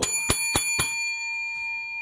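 A bell-like metallic ring: four quick strikes in the first second, then a ring that hangs on.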